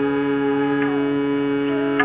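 A man's steady, unbroken nasal hum, the long 'mmm' of bhramari (humming bee) breath, over background instrumental music with a few plucked string notes.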